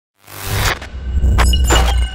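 Glitch-style logo intro sound effects: a deep bass drone with several short bursts of crackling static, starting about a quarter second in.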